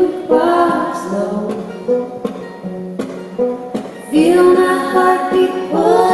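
Female voices singing held notes in close harmony, with sparse plucked notes on an acoustic guitar. The singing thins out after about a second and a half and swells back in about four seconds in.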